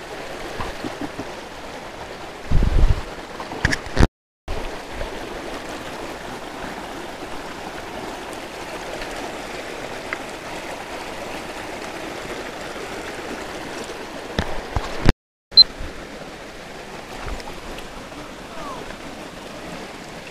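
Shallow rocky stream running steadily over stones. A loud thump comes about three seconds in and a few clicks later on. The sound cuts out completely twice, briefly.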